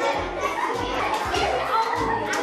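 Young children chattering over background music with a run of low bass notes.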